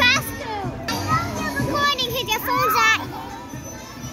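Young children squealing and chattering in high voices, with a loud squeal right at the start and another near the three-second mark.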